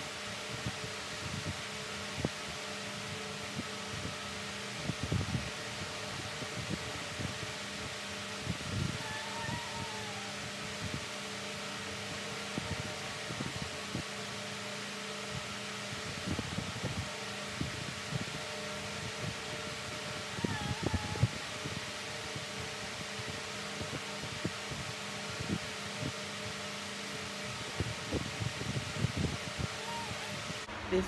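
Electric fan running steadily with a low hum, overlaid by small scattered clicks and taps from handling a powder compact and makeup brush.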